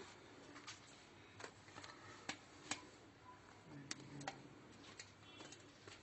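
Faint, scattered clicks and soft crackles as a hand tears a piece off a freshly baked, still-hot sesame-topped soft bread on a steel tray; otherwise near silence.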